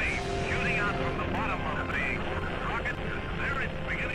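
Rocket launch rumble, a steady noisy roar, with thin, indistinct radio voice chatter over it throughout.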